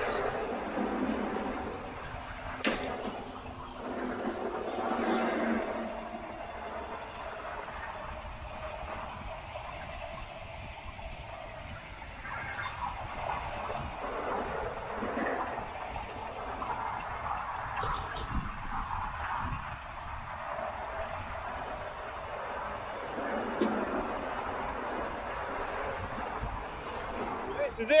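Motorway traffic passing steadily, lorries swelling and fading, with wind buffeting the microphone.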